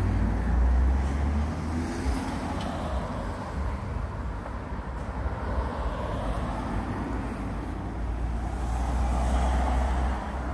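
Outdoor background rumble, steady and low, swelling about a second in and again near the end.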